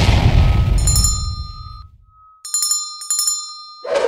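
Subscribe-button animation sound effects: a low boom that fades over about two seconds, bright bell-like dings about a second in and twice more near the end, then a short pop.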